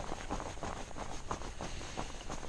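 Someone wading through shallow swamp water close by: a quick, irregular run of sloshing splashes.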